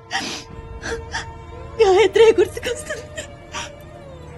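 A woman sobbing: a sharp gasping breath at the start, then a tearful wailing cry about two seconds in. A sustained, mournful film-score tone plays underneath.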